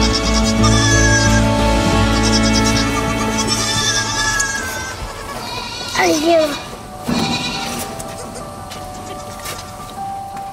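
Background music with sustained tones; about six seconds in, a goat kid gives one loud, wavering bleat over it.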